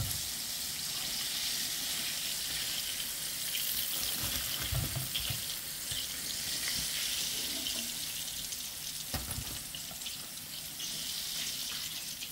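Hot cooking oil sizzling steadily in a frying pan, with a few soft knocks as fried chicken wings are set down on a paper-towel-lined plate.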